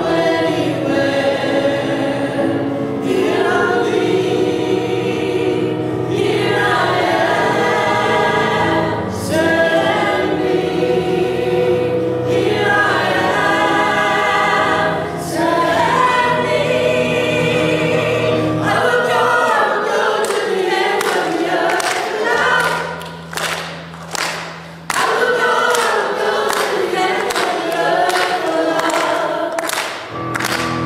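Church choir and worship team singing together with keyboard and electric guitar accompaniment. About two-thirds of the way through, the low accompaniment drops away while the voices carry on, and the sound dips briefly before the full singing comes back.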